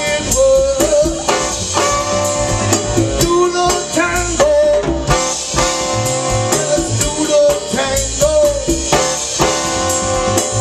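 Live band playing an upbeat soul number with a melody line carried over the rhythm section.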